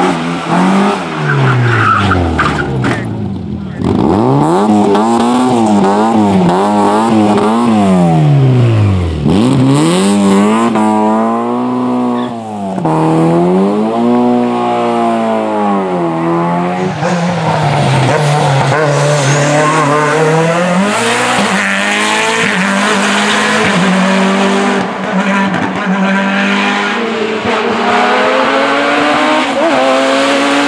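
Race car engines at full effort on a hillclimb: the pitch climbs and drops sharply every second or two through upshifts and lifts for the corners, then settles into a steadier, higher run that rises again near the end as another car approaches.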